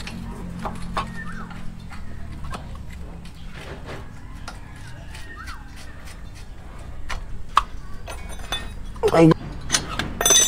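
Light metal clicks and knocks, scattered through the stretch, as a brake caliper is handled and seated by hand over a new brake rotor on a Toyota Innova's front hub, under a steady low hum.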